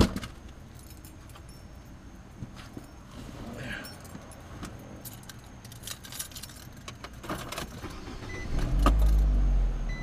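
A thump right at the start, then keys jangling and clicking inside a car. About eight and a half seconds in, the car's engine starts and keeps running low, the loudest sound here, with a short electronic chime near the end.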